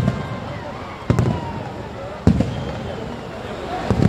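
Aerial firework shells bursting, about four booms a second or so apart, each with a short low rumble after it, over a background of crowd voices.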